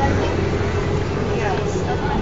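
Indistinct chatter of people close by over a steady low hum, with no single sound standing out.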